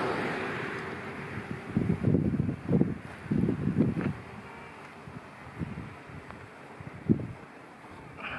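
Wind buffeting an outdoor camera microphone in irregular low gusts, after a rush of noise at the start that fades.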